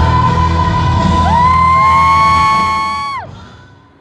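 Live concert music: a female singer holds a long high note while other voices slide up and join it, then it all cuts off abruptly about three seconds in, leaving a short quiet lull.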